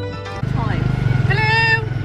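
Plucked-string music stops about half a second in. A tuk-tuk's motorcycle engine then runs steadily, and a voice calls out a drawn-out note over it a little past the middle.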